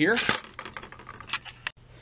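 A few light clicks and rattles of a USB cable being handled where it plugs into an embroidery machine's port.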